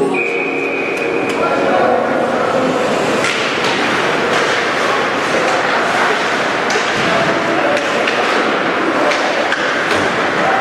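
Ice hockey arena crowd noise: a steady hubbub of many voices in a large, echoing rink. Scattered sharp clacks of sticks and puck and thuds against the boards come through it.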